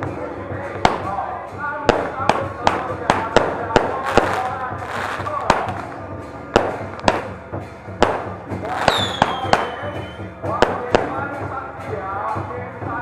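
Firecrackers going off one at a time at irregular intervals, about fifteen sharp bangs, with a short falling whistle about nine seconds in. Voices and music carry on underneath.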